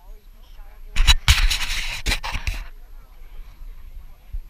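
Paintball markers firing close by: a few sharp pops about a second in, then a hiss of air lasting about a second and a half with more pops inside it. Faint chatter from the waiting group runs underneath.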